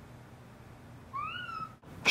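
A cat meowing once, a short call a little past halfway through that rises and then falls in pitch.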